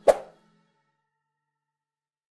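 A single short, sudden pop sound effect that dies away within about a quarter of a second, over the last low note of fading outro music.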